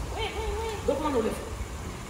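A person's voice making drawn-out, wordless sounds with a wavering pitch, like a hooting "ooh", lasting about a second and a half, over a low steady hum.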